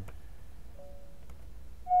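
Video doorbell chime ringing: a faint two-note ding-dong about three-quarters of a second in, then a louder high note starting near the end, falling to the lower note.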